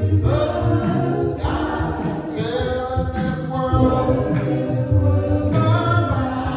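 Gospel praise team singing in harmony, a male lead voice carried by the group's backing voices.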